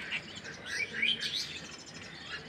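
Small birds chirping: a quick cluster of short, high calls about half a second to a second and a half in.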